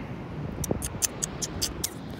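Phone handling noise as the phone is turned around: a run of about eight short, sharp ticks over a steady windy hiss.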